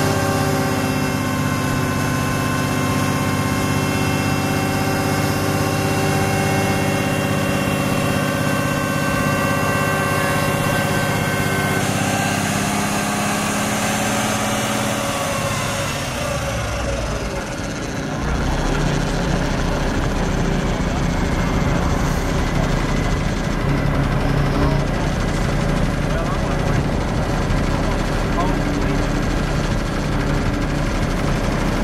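Truck diesel engine held at raised, steady revs while the dump trailer's hydraulic hoist tips the box up. About 16 seconds in the pitch falls and the engine drops back to a lower, rougher idle.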